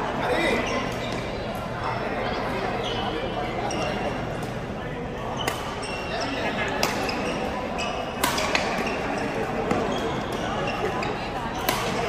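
Badminton rackets striking shuttlecocks in a large sports hall: several sharp smacks at irregular intervals, the strongest from about halfway on, over a steady background of players' voices.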